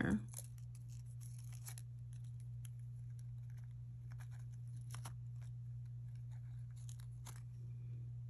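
Faint small clicks and light scratching as a wire-hook feather earring is handled and straightened between the fingers, with a steady low hum underneath.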